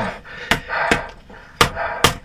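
A wooden mallet striking a person's bare back in a percussion-style massage: three sharp blows, with a fourth right at the end.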